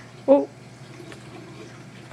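A woman's short hum about a third of a second in, then the faint, steady water sound of a running reef aquarium.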